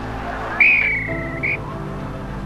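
A referee's whistle gives one blast lasting nearly a second, falling slightly in pitch, followed by a short second toot, over a steady background music bed. It signals the end of the first half.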